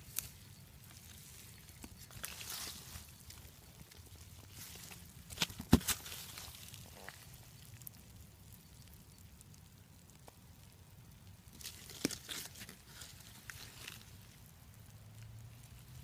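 Faint rustling and crackling of damp compost bedding and food scraps in a worm bin being disturbed, with a few short clicks and scrapes, loudest about six seconds in and again about twelve seconds in.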